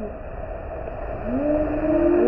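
Muffled, dull rush of water pouring and splashing at a water-park play structure. In the second half, rising, drawn-out calls from people come through it.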